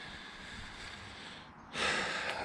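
Faint steady background hiss, then near the end a person drawing a quick breath in through the mouth or nose.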